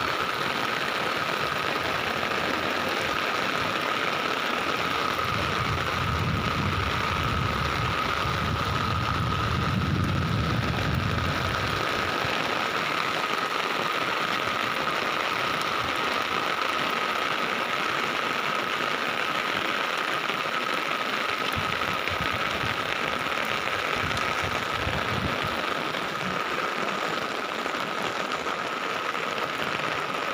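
Heavy rain falling steadily and drumming on an umbrella overhead, with a thin steady tone running through it. A low rumble swells from about five seconds in and fades by about twelve seconds.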